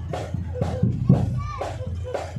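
Marching band drums beating a street cadence, mixed with the chatter of children and onlookers.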